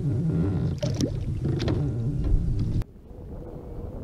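Wind rumbling on an action camera's microphone over open water, with a few short knocks and splashes about a second in as a bass is handled at the kayak's side; the sound drops abruptly to a quieter wash of water and wind near the end.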